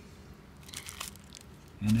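Plastic bubble-wrap packaging crinkling in a few brief, quiet rustles as a circuit board is handled on it.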